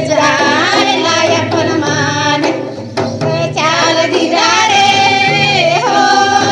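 A high voice singing a folk melody with wavering, sliding pitch over steady instrumental accompaniment, with a brief dip in the music a little under three seconds in.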